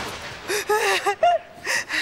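A woman crying: short, broken sobs and whimpers with gasping breaths.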